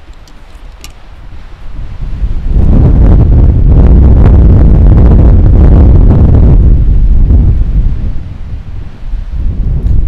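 Strong wind buffeting the microphone: a loud low rumble that builds about two seconds in, eases somewhat near eight seconds and rises again at the end.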